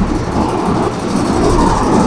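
Steady rumbling background noise, with no distinct events.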